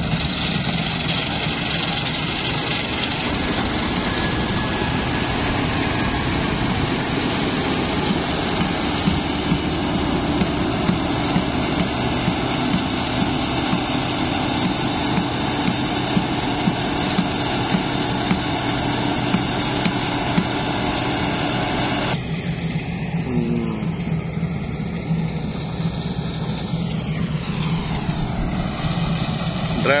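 New Holland 8070 combine harvester running and cutting rice at close range: a steady engine drone mixed with dense mechanical noise from the cutter and threshing gear. About two-thirds of the way in, the sound changes abruptly to a thinner, more distant machine hum.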